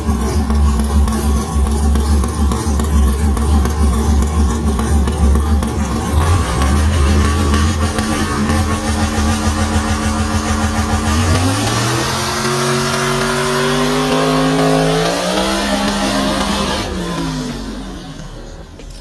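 A Fox-body Mustang drag car's V8 engine idles at the starting line with a steady deep note. About eleven seconds in it launches, the note climbing hard with a shift partway up, and it fades as the car pulls away down the track.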